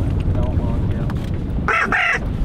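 Wind buffeting the microphone in a steady low rumble, with a brief harsh burst near the end.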